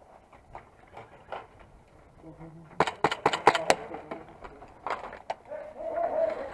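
Airsoft gunfire during a game: a quick run of about six sharp clicks in about a second, near the middle, with faint distant voices around it.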